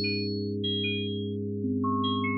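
Computer-generated synthesized tones in 5-limit just intonation, sonifying a tree-search algorithm: a sustained low chord that shifts about one and a half seconds in, with short high notes sounding one after another over it.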